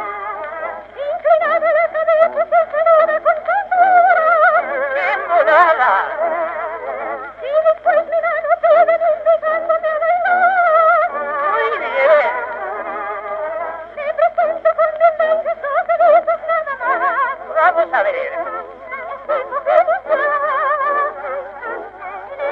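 Music from a 1912 phonograph cylinder recording of a zarzuela duet: a melody with strong vibrato over accompaniment, with no words heard. The sound is thin and narrow, with no bass and no high treble, as on an early acoustic cylinder.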